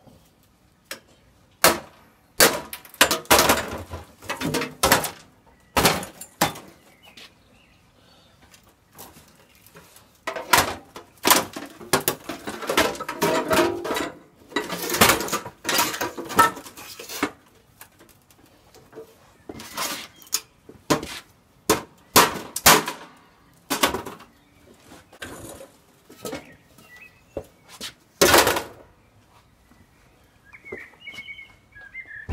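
Thin sheet-metal casing of an old water boiler being prised and scraped off with a blade: irregular bursts of metallic clanking, scraping and rattling, with short pauses between them.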